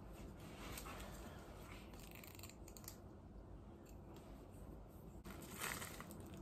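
Faint rustling of a plastic package being handled and opened, a little louder near the end.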